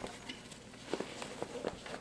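Faint rustling and a few light ticks as a large water bottle is pushed down into a backpack's expandable side pocket.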